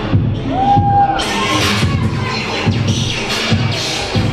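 Hip hop music with a heavy beat played over a loudspeaker, with a crowd cheering and shouting from about a second in.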